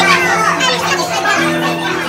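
High, lively voices of a group talking over each other, over music with held notes that change every half second or so.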